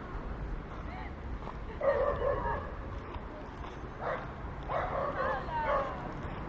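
Children's voices calling out in two short excited bursts, one about two seconds in and a longer one near the end, with pitch sliding up and down.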